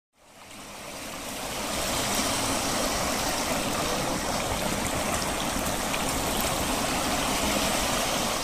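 Water fountain with a ring of jets spraying into a round basin: steady splashing and pouring of water that fades in over the first two seconds.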